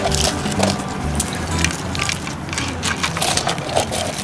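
Crisp crackling of deep-fried snakehead fish pieces, scales and skin crunchy, being picked up and set down on plates, over background music.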